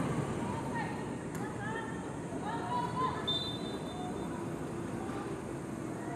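Footballers' distant shouts and calls during play, faint and scattered over a steady open-air background noise, with a short faint high tone a little past halfway.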